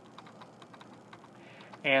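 Faint, quick, irregular clicking of computer keyboard keys being typed, with a man's voice starting near the end.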